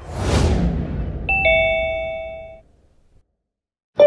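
Cartoon explosion sound effect: a sudden noisy burst that fades away over about two seconds. About a second in, a two-note ding-dong chime rings briefly, then the sound drops to near silence.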